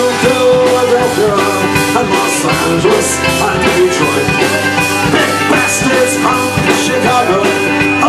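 Irish pub rock band playing live: full band music with drums, guitar and a singer at the microphone.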